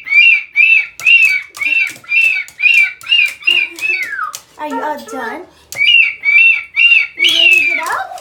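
Moluccan cockatoo calling in a quick run of short squawks on one pitch, about three a second, broken by a falling call and some lower, wavering calls in the middle; it ends on a longer falling call.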